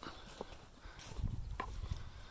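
Footsteps of someone walking over dirt and grass: soft thuds, mostly in the second half, with a couple of light clicks.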